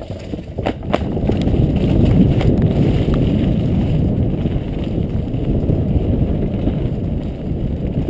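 Downhill mountain bike rolling off a wooden start ramp with a few knocks in the first second, then a steady rumble of knobby tyres on a dirt trail and wind on the microphone at speed.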